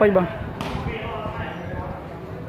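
A single sharp slap of a hand on a volleyball about half a second in, over faint chatter of onlookers.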